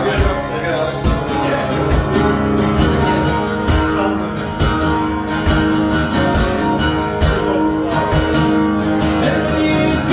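Acoustic guitar strummed in a steady rhythm, its chords ringing on between strokes, in an instrumental stretch of a live solo song.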